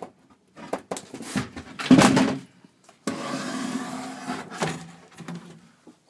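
Wooden fold-up bunk in a small camper being folded up by hand: a series of knocks and clunks, loudest about two seconds in, followed by about a second and a half of steady rubbing noise.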